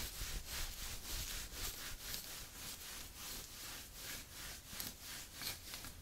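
Long fingernails scratching the fabric of a dress in quick, even rubbing strokes, about four or five a second.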